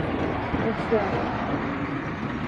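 Steady low rumble of a running motor-vehicle engine, with faint voices in the background.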